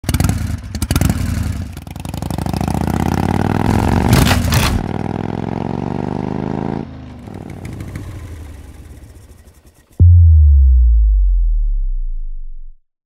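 Electronic intro sound design: a glitchy, crackling texture with a stack of engine-like tones that slide in pitch, cutting off at about seven seconds and fading out, then a sudden deep bass boom about ten seconds in that slowly dies away.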